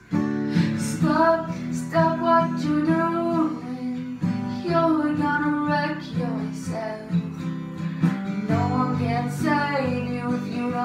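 A woman singing with her own strummed acoustic guitar, a steady chord accompaniment under the melody. It is recorded in a small toilet room, which gives the voice and guitar a close, roomy sound.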